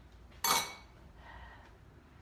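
Serving spoon knocking once against a pan of curry, a single short clatter about half a second in.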